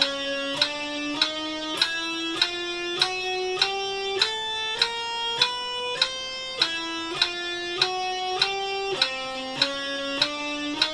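Electric guitar playing a four-fret chromatic speed-building drill: single picked notes, one per click of a metronome ticking about 100 times a minute. The notes climb step by step, drop back twice and climb again.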